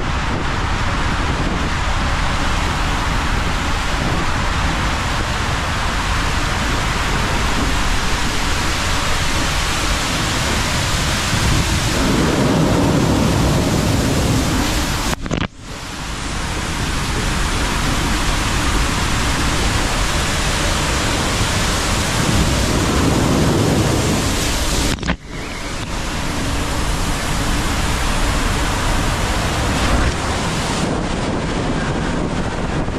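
Steady loud rush of water and air inside an enclosed tube waterslide as a rider on an inflatable tube slides down, with low rumbling swells now and then. The sound cuts out abruptly for a moment twice, about halfway through and again later.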